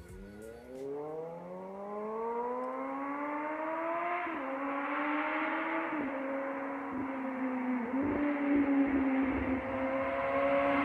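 Suzuki GSX-S750's inline-four engine through a TOCE slip-on exhaust, approaching under hard acceleration. The note climbs for about four seconds, then drops with upshifts at about four and six seconds and dips briefly twice more, growing steadily louder as the bike nears.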